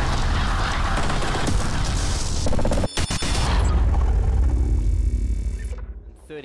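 Animated-logo intro sting: loud, dense booming sound effects with music, a short break with crackling about three seconds in, then a deep rumble that cuts off suddenly near the end.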